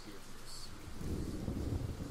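Thunder sound effect: a low rolling rumble that sets in about a second in and keeps going.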